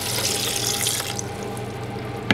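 Water poured from a glass measuring cup into a Vitamix blender jar, a steady splashing pour that stops a little over a second in.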